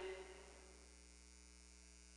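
Near silence: a faint, steady electrical mains hum, likely from the sound system, after the tail of the last spoken word dies away in the first half second.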